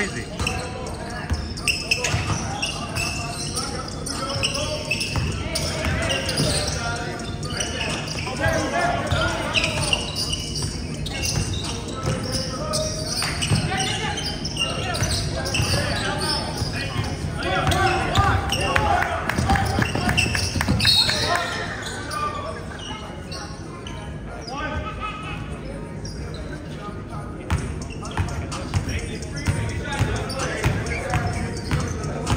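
Basketball bouncing on a hardwood gym floor as it is dribbled during a game, among the voices of players and spectators.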